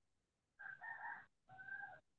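A faint animal call in two parts, each about half a second long and held at a steady pitch, with a short break between them.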